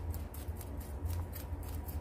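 Metal tweezers picking and scratching through gritty potting soil around a succulent's root ball: faint, scratchy rustling with small clicks, over a steady low hum.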